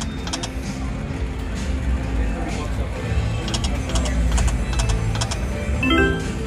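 Konami Golden Plains video slot machine spinning its reels: runs of short clicks as the reels tick and stop. A brief chime near the end marks a small win. Casino background din of chatter and machine music runs underneath.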